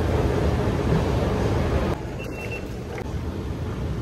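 Steady rumbling ambience of a busy Elizabeth line station entrance and escalator. It steps down slightly in level about two seconds in.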